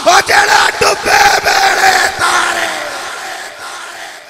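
A man's loud, chanted recitation voice through a PA system with echo, in short bursts of syllables. Then one long held note falls slightly in pitch and trails away over the last couple of seconds.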